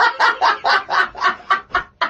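A man laughing hard in a high-pitched cackle, quick repeated bursts about four a second, dying away just before the end.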